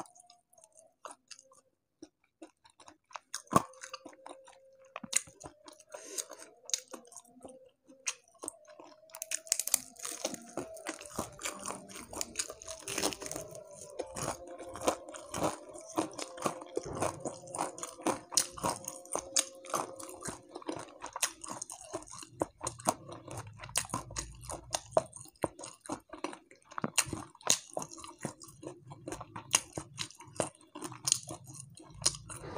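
Close-miked chewing and crunching of crispy deep-fried catfish, with small crackles as the crisp coating and flesh are pulled apart by hand. It starts almost silent and the crunching thickens from about nine seconds in.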